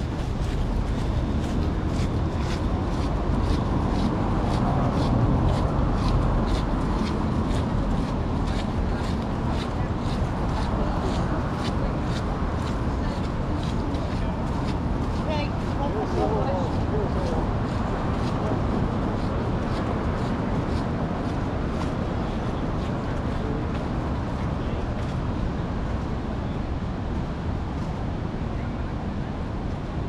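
Busy outdoor walkway ambience: indistinct chatter of passers-by over a low rumble, with the walker's footsteps ticking on paving about twice a second until they fade out in the last third.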